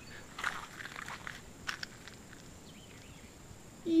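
Footsteps on a dry dirt trail: a few irregular, scuffing steps.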